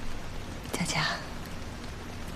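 A woman makes one short, breathy, whispered vocal sound about a second in, over a steady background hiss.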